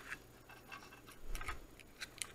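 A handful of light, irregular clicks and taps as jumper wires are pushed into a breadboard and fingers handle the small plastic box that holds it, with a soft thump about one and a half seconds in.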